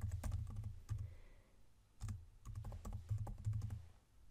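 Typing on a computer keyboard: a quick run of key clicks, a short pause a little before the middle, then more keystrokes.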